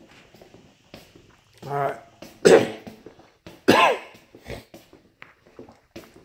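A man coughing: a short voiced grunt, then a sharp cough about two and a half seconds in, the loudest sound, and another cough with a rising-and-falling voiced tail near four seconds.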